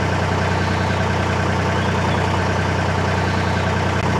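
Narrowboat's diesel engine running steadily at cruising speed, an even low drone.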